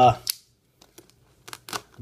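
A word trails off at the start. Then come a few faint clicks and light handling noises from hands on a shrink-wrapped cardboard box of trading cards, with a small cluster of clicks about a second and a half in.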